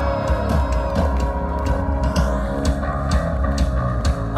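Live rock band playing an instrumental passage: electric guitars, bass guitar and a drum kit with steady drum hits, loud through the stage sound system.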